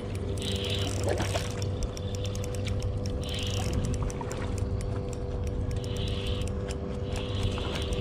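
Spinning reel being cranked to work a jerkbait: gears whirring and ticking in short bursts, a few seconds apart. A steady low hum runs underneath.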